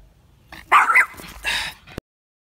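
A dog barking, a few short barks starting about half a second in.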